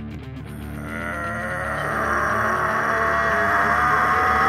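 Music with a long, drawn-out roaring vocal sound over it, swelling in loudness over the first couple of seconds and then held.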